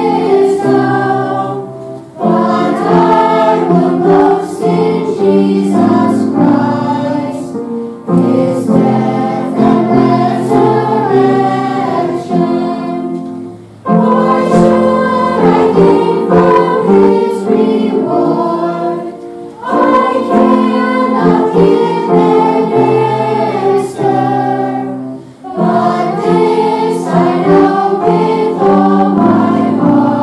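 A choir of children and teenagers singing together, in phrases about six seconds long with short pauses between them.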